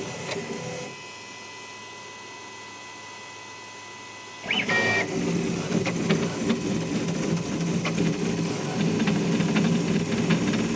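Crossed-gantry 3D printer. After a quieter stretch with a faint steady tone, about four and a half seconds in its stepper motors start working hard, whining in quickly shifting stepped pitches with light ticks as the print head moves fast.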